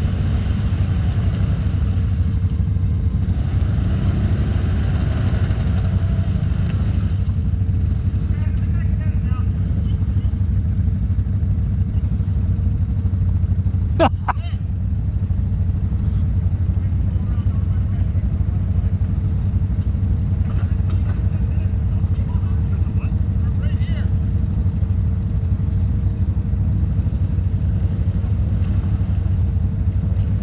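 ATV engine idling steadily close by, a constant low rumble. A single sharp click sounds about halfway through.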